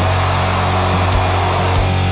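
Death metal recording: heavily distorted guitars holding a low sustained chord, with cymbal hits about every half second.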